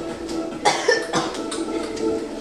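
A person coughing in a short burst a little over half a second in, over music playing from a television.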